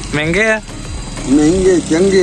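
A man speaking in two short phrases, over a faint steady low hum.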